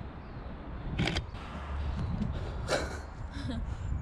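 Wind rumbling on the microphone, with rustling footsteps through dry bracken and pine litter and a short laugh about a second in.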